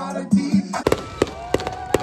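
Hip-hop dance music briefly, then after a sudden cut a fireworks display: several sharp bangs and crackles in quick succession.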